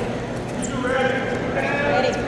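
Raised human voices calling out across a sports hall, starting a little under a second in and growing louder toward the end.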